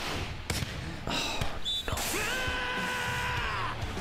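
Played-back soundtrack of an animated volleyball match: several sharp smacks of ball hits in the first two seconds, then music with one long held note.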